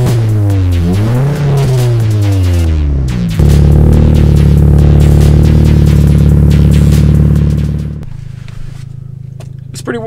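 Volkswagen Golf R (Mk6) turbocharged four-cylinder revved while parked. The revs rise and fall for about three seconds, then are held at a steady high rev for about four seconds before dropping away about eight seconds in.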